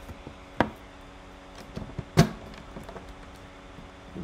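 Hard plastic lock box being handled, with a click about half a second in and a louder, sharp click about two seconds in as the lid is shut and its key lock is worked.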